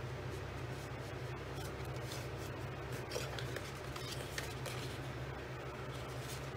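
Green cardstock being folded and creased by hand along its score lines, with irregular crinkling and rustling of the paper over a steady low hum.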